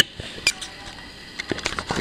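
Small clicks and taps of a metal diecast toy truck being handled and set down on a wooden table: a sharp click at the start, another about half a second in, and a few faint ticks near the end.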